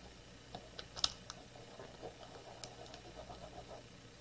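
Faint handling noise of hands rubbing and pressing transfer tape over an adhesive vinyl decal on a small plastic jar, with a few light clicks and taps of fingers on the plastic. The sharpest tap comes about a second in.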